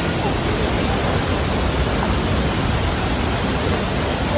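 Rushing water: a steady, even hiss of fast-flowing water.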